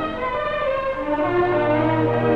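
Orchestral film title music with strings, sustained chords; a low held note enters about a second in.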